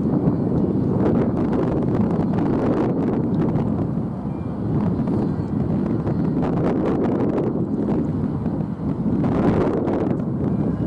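Wind buffeting the microphone: a loud, uneven low rumble that swells in gusts, one about a second in and another near the end.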